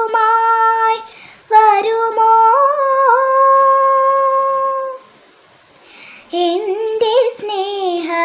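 A young girl singing solo with no accompaniment, holding one long steady note in the middle of the phrase, with a short break about a second in and a pause for breath near the end before she sings on.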